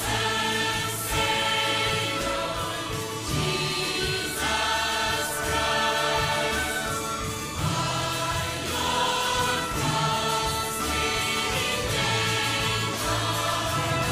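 Combined adult and children's choir singing a contemporary worship song in sustained chords, with orchestral accompaniment.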